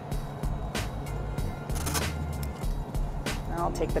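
Wet hair being rubbed with the hands and then a cloth towel, short rustling strokes over a steady low hum of cabin ventilation.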